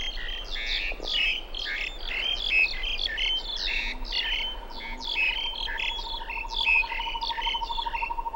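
Forest birds chirping, a busy run of short high chirps and calls. About halfway through, a steady, fast-pulsing trill joins in and keeps going.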